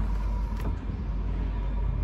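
Truck cab door swinging open, with a faint click about half a second in, over a steady low rumble.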